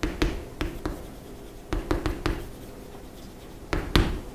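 Writing by hand: a series of short taps and light scratches in three clusters, near the start, around two seconds in, and loudest just before the end.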